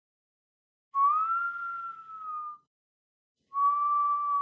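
Two long, clear high-pitched tones. The first starts about a second in, rises slightly and then sinks away over about a second and a half. The second comes near the end and is shorter and held level.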